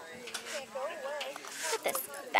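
Indistinct voices of people talking in the background. Near the end comes a brief rustling clatter as a cardboard box lid is opened and a metal mesh purse is lifted out.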